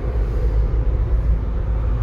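Steady low rumble of road and engine noise heard inside a moving car.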